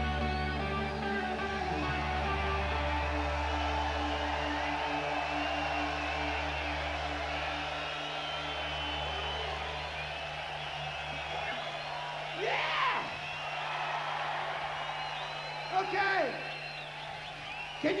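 A rock band's last chord ringing out over a held bass note, on top of a large open-air crowd cheering. The bass note stops about eleven seconds in, leaving the crowd cheering, with a few loud whoops.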